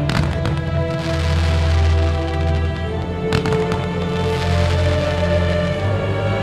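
Music playing with fireworks going off over it: a quick cluster of sharp bangs right at the start and another single bang a little past halfway.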